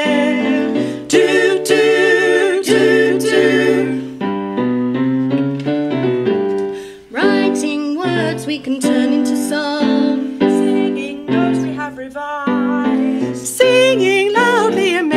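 Women's vocal group singing a light pop song together, held notes with vibrato, over keyboard accompaniment. A short break between phrases comes about seven seconds in.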